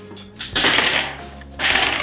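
Small plastic LEGO bomb pieces dropping from a toy ship's bomb-release and clattering on a tabletop, in two rattling bursts about a second apart, with background music underneath.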